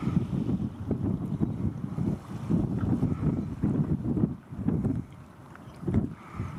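Wind buffeting the microphone: an uneven low rumble that rises and falls in gusts, easing off about two-thirds of the way through.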